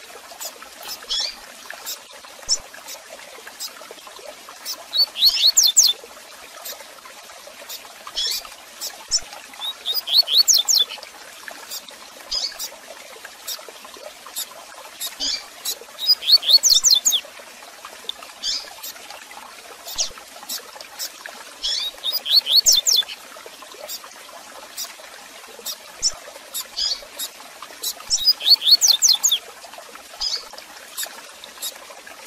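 Double-collared seedeater (coleiro) singing its 'tui tui zel zel' song, phrases of rapid descending high notes about every six seconds, with single short chirps between them. A faint steady hiss runs underneath.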